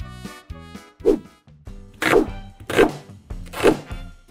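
Kitchen knife chopping an onion on a plastic cutting board: four sharp strikes of the blade on the board, roughly a second apart. Background music plays throughout.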